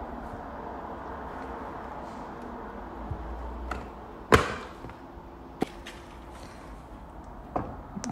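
Plastic lid of a thin-set mortar bucket being handled, with one sharp plastic click a little past halfway and a few fainter ticks, over a steady low hum of room noise.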